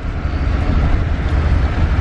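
Steady low rumble of a taxi heard from inside the cabin while riding, the car's engine and road noise with no sharp events.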